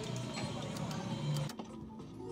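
Electronic sound effects from a Pennsylvania Skills skill-game machine: a busy run of quick clicks cuts off suddenly about one and a half seconds in, giving way to a few quieter held electronic tones.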